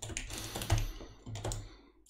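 Typing on a computer keyboard: a quick run of key clicks that stops near the end.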